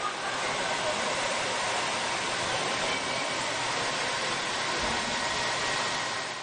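Steady rush of cooling fans in a rack of servers and storage arrays, heard close at the back where the exhaust air blows out, with a faint whine running through it. It swells up in the first moment and then holds steady.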